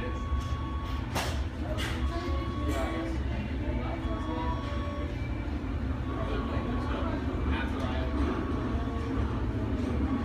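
A person's voice over a steady low rumble, with a faint high tone that comes and goes every second or two.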